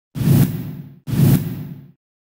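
Whoosh sound effect of a TV news channel's logo sting, heard twice in a row. Each one starts suddenly with a deep hit and a hissy sweep, then fades away in under a second.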